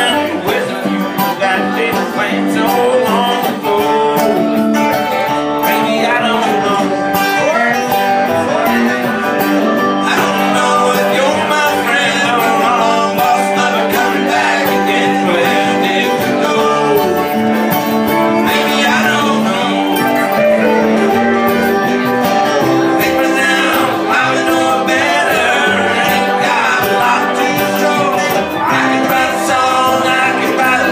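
Live country band playing a song, with electric guitar, mandolin, upright bass and keyboard.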